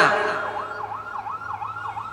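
A siren in a fast up-and-down yelp, about four sweeps a second, coming in about half a second in as a man's voice trails off in reverberation, over a steady low hum.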